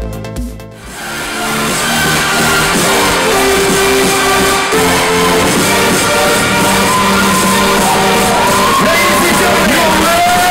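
An electronic dance track with a steady kick drum about twice a second stops just under a second in. A live-sounding dance music mix with crowd noise swells in and carries on, and near the end a voice glides up and down over it.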